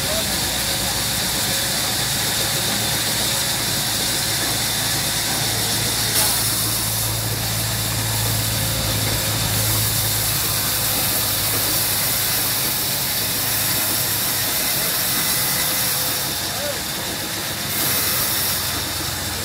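Large vertical band saw ripping a long squared timber beam: a steady high hiss of the blade cutting through the wood over the running machine, with a deeper hum that swells for a few seconds midway.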